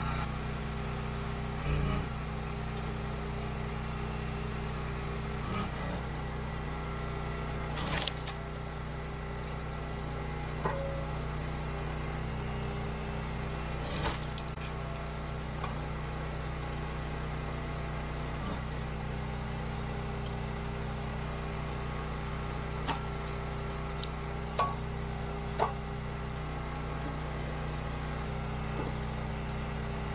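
Gas engine of a Wolfe Ridge 28 Pro hydraulic log splitter running steadily, with a few sharp knocks and cracks as rounds are set on the beam and split.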